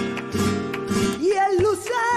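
Flamenco song: acoustic guitar strumming chords, then a woman's voice entering about a second in with a wavering, ornamented sung line over the guitar.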